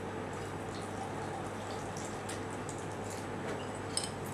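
Spirit poured from a bottle into a glass: a faint, steady trickle over a low hum.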